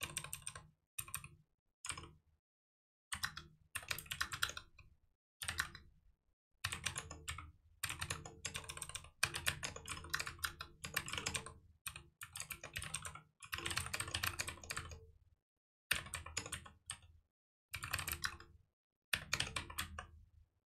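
Computer keyboard being typed on in bursts of rapid keystrokes with short pauses between them, a long continuous run in the middle.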